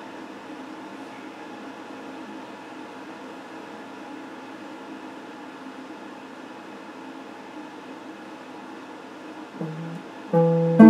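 Steady hum and hiss of an electric guitar amplifier, with the strings idle. A single low guitar note sounds briefly near the end.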